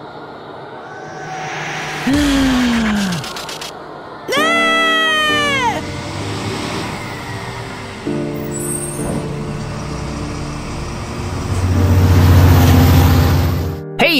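Cartoon soundtrack: a pitched sound effect gliding down about two seconds in, then a brighter pitched effect that rises and falls over about a second and a half. From the middle on, background music with held chords, swelling to a loud low note near the end.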